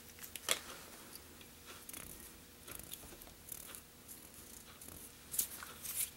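Faint scattered rustles and small clicks of hands working seal-fur dubbing onto tying thread, with sharper clicks about half a second in and near the end.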